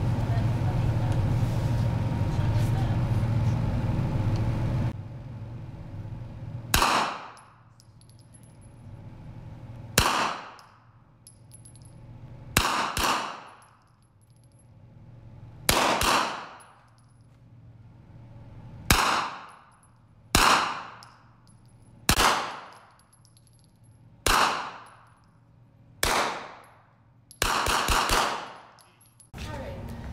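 Gunshots from a compact rifle fired one at a time on an indoor range, about a dozen in all, one to three seconds apart, ending with a quick string of shots close together. Each sharp crack dies away over about a second.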